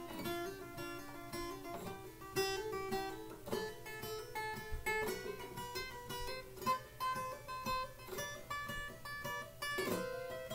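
Steel-string acoustic guitar playing a left-hand finger-endurance exercise: quick hammer-ons and pull-offs between notes a third apart, each figure repeated three times before moving to the next, in a steady run of short notes.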